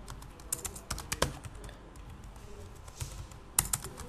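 Computer keyboard typing: short runs of keystrokes in the first second or so and again near the end, with sparser taps between.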